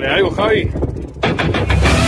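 Outro jingle under the channel's logo card: a short gliding, voice-like sound, then a quick run of hard hits in the second half that leads into a ringing chord.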